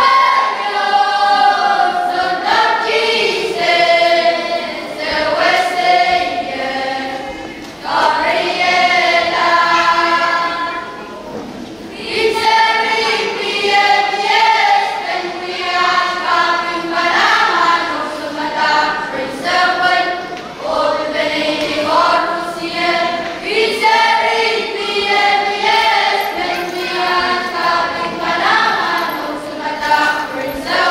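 A group of young boys singing a choral song together, with long held notes. The singing eases briefly about eleven seconds in and picks up again at twelve.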